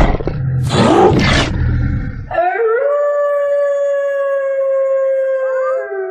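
Werewolf sound effect: two rough growls, then about two seconds in a long howl that rises and then holds one steady pitch for over three seconds, with a second, higher howl joining near the end.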